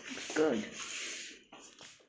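A short vocal sound falling in pitch, then a rustling, rubbing noise that fades out about two-thirds of the way through.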